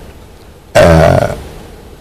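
A man's drawn-out hesitation sound, a low held "aah", starting suddenly about three-quarters of a second in and fading away over about a second before he goes on speaking.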